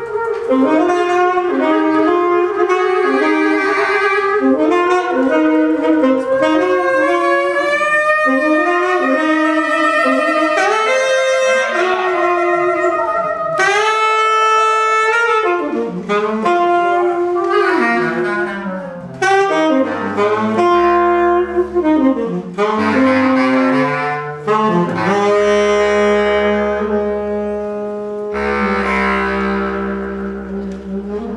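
Jazz duet of saxophone and bass clarinet improvising, two melodic lines weaving around each other. In the second half the bass clarinet holds long low notes beneath the saxophone.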